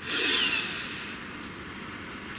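A long breath from the man, loudest just after it starts and then fading slowly.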